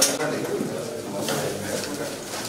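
Indistinct chatter of many voices in a crowded hall, with the crackle of paper ballots being unfolded and sorted, including a short sharp rustle at the start and another a little past halfway.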